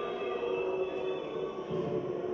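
Live match sound in an indoor football hall, echoing, with a few held tones standing out over a steady background that fades about three-quarters of the way through.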